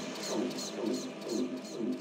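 Quiet electronic techno outro: a sparse, evenly repeating synth pattern of about three short pulses a second, with no beat underneath.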